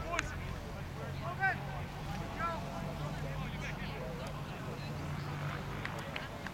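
Distant shouts and calls of players across an outdoor football pitch, over a low steady rumble.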